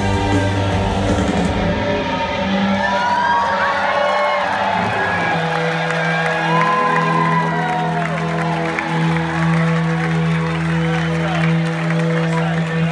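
A live rock band's song winds down to a steady held chord while a concert audience cheers, whoops and applauds.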